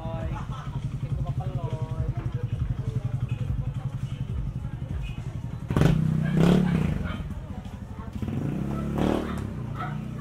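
Motorcycle engine running with a rapid low putter, getting suddenly louder about six seconds in and swelling again near nine seconds.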